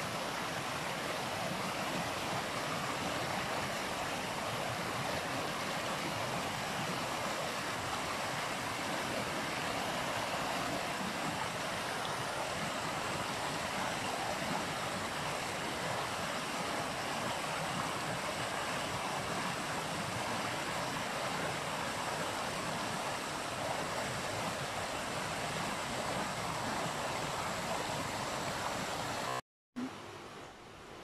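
A shallow, rocky stream rushing steadily over stones. The sound cuts off abruptly just before the end.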